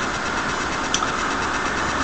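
Steady background noise, mechanical-sounding, with one faint click about a second in.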